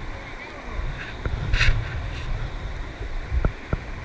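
Wind rumbling on the microphone over the sound of flowing river water around a kayak, with a short splash about a second and a half in and two light knocks near the end.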